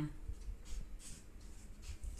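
Black marker pen writing on chart paper: a few short, faint scratchy strokes as a word is written.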